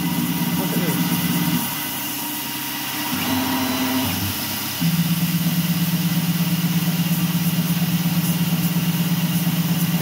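MR-1 CNC gantry mill slotting aluminum with an eighth-inch two-flute end mill at 8,000 RPM under mist coolant: a steady cutting sound that drops away about a second and a half in. A quieter, changing whir follows as the head moves to a new position, and the steady cutting sound comes back abruptly near the five-second mark and holds.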